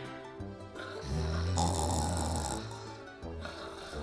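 A person snoring: one long snore starting about a second in, over light background music.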